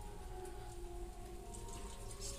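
Faint bubbling and popping of a thick curry simmering in an aluminium pot, over a low steady hum.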